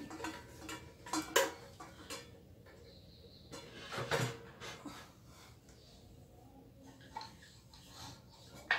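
Metal clinks and knocks of a mechanical kitchen scale with a stainless steel bowl being handled and set on a shelf: a few sharp strikes in the first two seconds, a heavier knock about four seconds in, then small taps.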